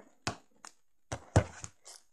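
Several sharp clicks and knocks of small plastic toy figures being handled and set down on a desk, the loudest about a second and a half in.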